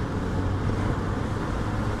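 Steady engine and road noise heard from inside the cabin of a Vauxhall Astra 1.4 petrol hatchback driving along, a low even hum with tyre rumble.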